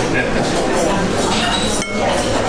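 Tableware clinking against crockery, with a couple of short ringing clinks in the second half, over steady restaurant chatter.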